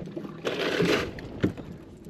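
A short rush of sloshing water lasting about half a second, followed by a single faint knock.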